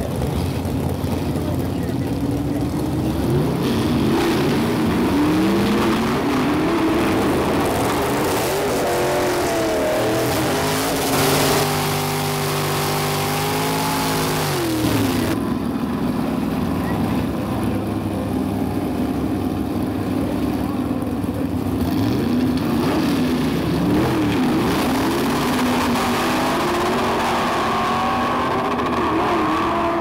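Several gasser drag cars' engines idling and blipping the throttle in the staging lanes. One engine is held at a steady high rev for about four seconds mid-way, then drops back. Near the end the engines rise in pitch as the cars launch down the strip.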